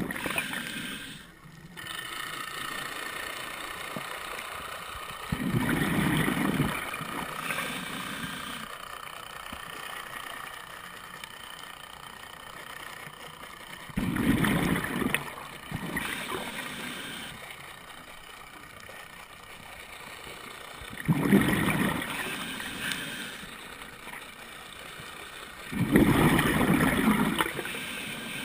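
Scuba diver's regulator exhalations heard underwater: bubbly gurgling bursts about every seven seconds, four in all, with a quieter wash between them.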